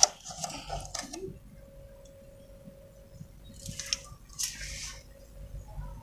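Plastic cups of water being handled: a sharp knock at the start, a few short clatters and water sounds in the first second, then two brief rustling, sloshing bursts in the second half. A faint steady hum runs underneath.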